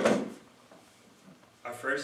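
A man speaking, with a pause of about a second between phrases.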